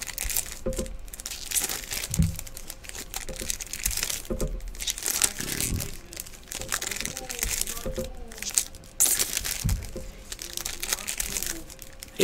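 Trading-card pack wrappers crinkling and tearing as packs are ripped open and the cards handled, a dense run of crackling rustles.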